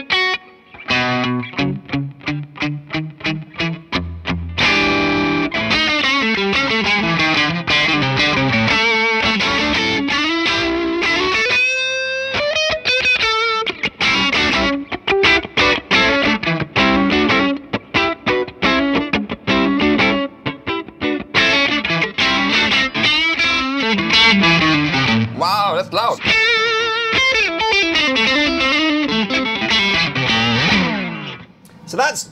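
Electric guitar played through a Laney Ironheart Foundry Loudpedal 60 W amp pedal on channel one into a speaker cabinet, with the gain up for an overdriven tone. It opens with short, rhythmic stabbed chords, then moves into fast riffs and lead lines with string bends and vibrato.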